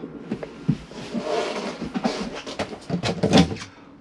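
Irregular clicks and light knocks of a wooden wall cupboard door and its latch being handled, with the loudest cluster of clicks near the end.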